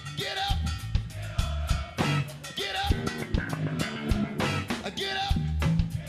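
Rock band playing live: electric guitar and bass over a steady drum-kit beat, loud through a big concert PA as heard from the crowd.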